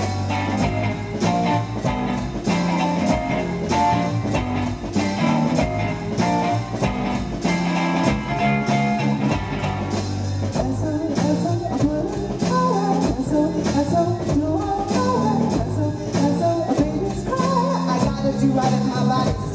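Live music: a ukulele strummed over a steady beat with low bass notes, and a woman singing, most clearly in the second half.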